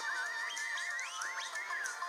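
Whistling that imitates prairie dogs, answering the line about prairie dogs whistling: a run of quick, wavering whistles that glide up and down, over soft backing music.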